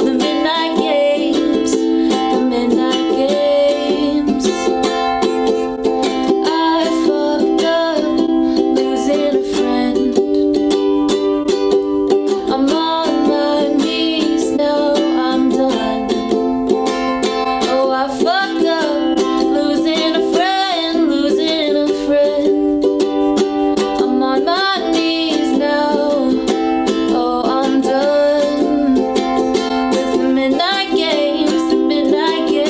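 Ukulele strummed steadily under a woman's sung vocal melody.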